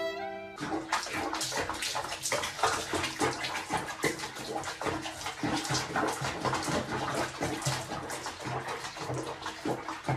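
Water splashing in a bathroom sink where a cat is being bathed, heard over background music. Up to about half a second in, only the music's sustained tones are heard; then the splashing starts, with a repeating bass line underneath.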